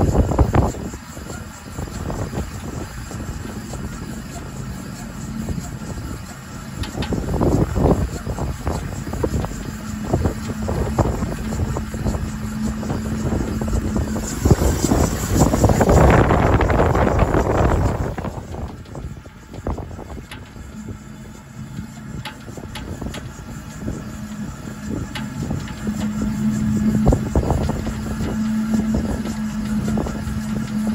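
Gusty wind buffeting the microphone, rising to its loudest rush around the middle, with a steady low hum coming and going underneath.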